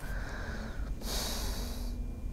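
A woman's audible breathing during a pause in speech: a soft breath, then a louder, hissing breath drawn in about halfway through that lasts almost a second.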